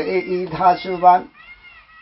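A man's voice singing a Limbu hakpare samlo line in a wavering, gliding tone, breaking off about a second and a quarter in. A faint, short high tone rises and falls just after.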